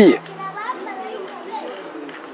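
Faint voices of children playing in the background. A loud voice cuts off at the very start.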